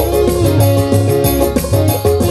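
Live dangdut band music played loud over a stage sound system: a plucked guitar line over a steady, quick beat.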